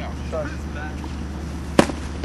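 A single sharp crack of a baseball impact near the end, from a pitched ball striking the bat or the catcher's glove, with brief shouts from players before it.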